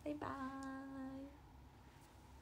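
A young woman's voice calling a drawn-out, sing-song "bye-bye", the last vowel held on one steady pitch for about a second.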